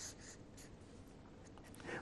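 Faint, short scratching strokes of a marker pen writing on paper.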